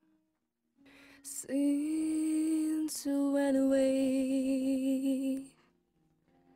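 Unaccompanied female voice singing two long sustained notes, the second with vibrato. They follow a short pause and a soft intake, and the voice stops about half a second before the end.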